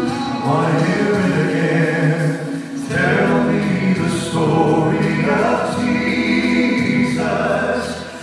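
Male gospel vocal trio singing a hymn in close three-part harmony through microphones and a PA system, holding long chords in phrases of a few seconds with brief breaths between them.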